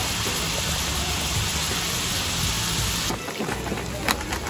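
Diced capsicum and onion sizzling in hot oil in a pan, a steady hiss. About three seconds in it cuts to a quieter, crackling sizzle with scattered pops.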